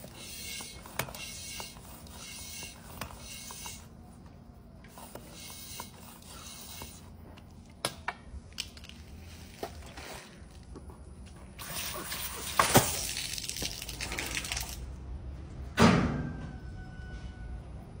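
Hand floor pump being worked to pressurise a plastic water bottle, a faint repeated stroke about once a second, then a rush of escaping air and water about two-thirds through and a sudden loud burst near the end as the bottle lets go.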